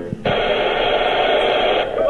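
A burst of radio-like static, about a second and a half long, starting and stopping abruptly. It is played from the hacked Teddy Ruxpin's speaker into a handheld microphone as part of its custom demo audio.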